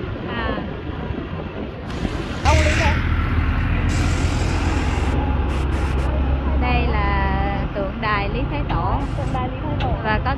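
Road vehicle rumble with people talking over it: a deep rumble comes in suddenly with a burst of hiss a couple of seconds in and holds for about five seconds before fading.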